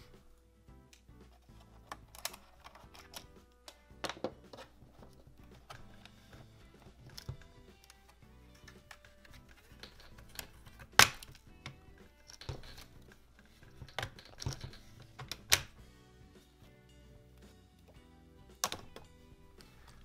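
Faint background music, with scattered sharp clicks and snaps from the plastic case of an HP 15 laptop being pried apart by hand as its clips release. The sharpest snap comes about eleven seconds in.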